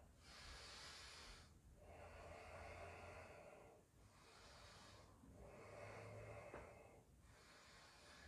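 Faint, slow breathing: a person's long breaths in and out, about five in all, each lasting a second or two with short pauses between.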